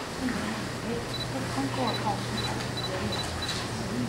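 Quiet, indistinct talking away from the microphone over a steady low electrical hum from the sound system, with several short high beeps from about a second in.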